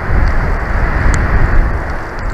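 Wind gusting against an outdoor nest-cam microphone: a loud, rough rumble that surges up at the start and stays strong, with one faint click about a second in.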